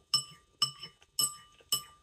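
Metal fork and spoon clinking together while eating: four sharp clinks about half a second apart, each with a brief metallic ring.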